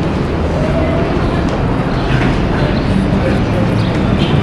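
Busy metro station ambience: a steady, loud rumble with voices of people passing by.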